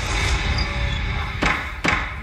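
Intro sting of a courtroom documentary's title card: a low rumbling, hissing swell, then two sharp knocks about half a second apart near the end.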